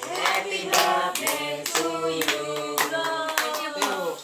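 People clapping their hands along to a birthday song: a sung melody over steady bass notes, with claps about two or three a second.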